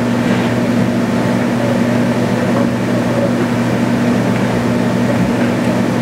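Room tone in a meeting room: a steady low hum with an even hiss and no other events.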